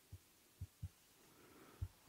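Near silence broken by about four faint, soft knocks as a marker pen writes on a whiteboard.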